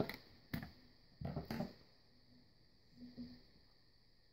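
Faint clicks and knocks of a plastic kitchen timer's case being handled and closed: a sharp click about half a second in, a cluster of knocks about a second later, then a soft bump near three seconds.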